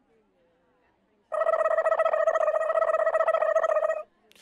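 A steady, high-pitched buzzing tone that starts about a second in and cuts off abruptly.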